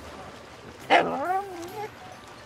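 A single dog vocalization: a sharp bark about a second in that trails into a short wavering whine, lasting under a second.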